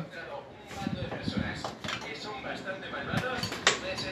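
Clicks and knocks of a new electric blender's stainless steel jar and base being handled and fitted together, with a sharper click near the end; the motor is not running.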